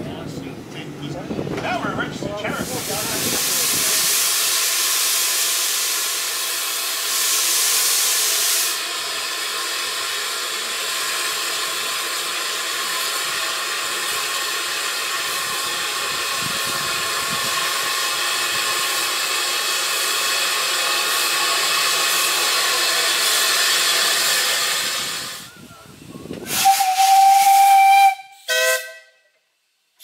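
Narrow-gauge steam locomotive hissing steam steadily for more than twenty seconds. Near the end its whistle sounds one steady blast of about a second, then a short second toot.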